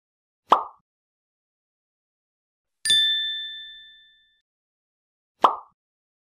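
Animated logo sound effects: a short pop, then a bright bell-like ding that rings out and fades over about a second and a half, then a second pop near the end.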